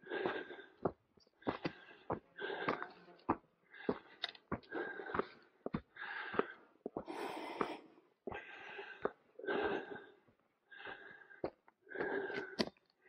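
A hiker breathing hard and rhythmically close to the microphone, about one breath a second, with footsteps on a dirt trail clicking between the breaths.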